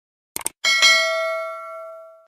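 Subscribe-animation sound effect: a quick double mouse click, then a notification bell dinging, struck twice in quick succession and ringing out, fading over about a second and a half.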